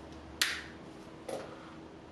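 Single-use spring-loaded safety lancet firing against the side of a finger: one sharp click about half a second in, then a second, fainter click a little under a second later.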